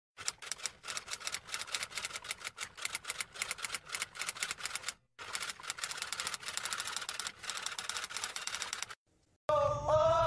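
Typewriter sound effect: rapid key clacks, several a second, in two runs with a short break about five seconds in.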